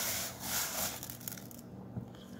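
Fingers raking through oven-dried coarse sea salt and orange zest on a baking sheet: a gritty, crunchy scraping rustle that fades out about a second and a half in.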